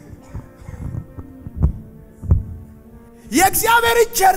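Soft, sustained keyboard chords hold under a pause in the sermon, with a few irregular low thuds. Near the end, a man's raised preaching voice comes in loudly.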